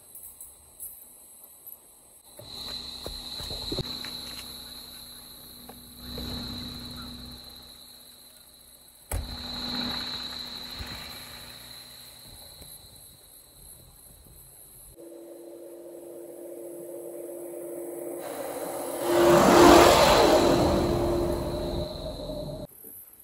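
Volkswagen Amarok V6 turbo-diesel ute driving on a dirt track in several short clips, its engine and tyre noise rising and falling. From about 15 s a steady engine hum builds. About 19–20 s in, it passes right over the camera in a loud rush of engine and tyre noise, the loudest moment.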